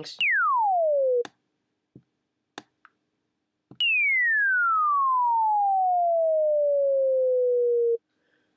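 Bomb-whistle effect from a Logic Pro ES2 synthesizer's plain sine wave, its pitch swept down by an envelope: two notes, each falling steeply from a high whistle to a low tone. The first lasts about a second and cuts off; the second, starting about four seconds in, falls more slowly over about four seconds. A few faint clicks sound in the gap between them.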